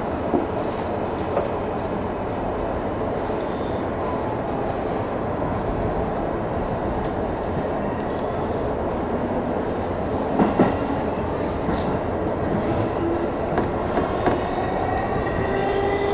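JR Chuo Line rapid electric train running steadily along the line, heard from inside the front car: a continuous rumble of wheels and motors with a few short knocks.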